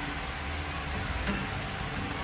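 Steady low hum and hiss of room noise, with a few faint light clicks.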